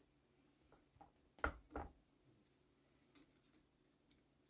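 Near silence broken by two short clicks about a second and a half in, a cutter nipping the bonsai wire on a larch's branch, with a few fainter ticks of the wire being handled.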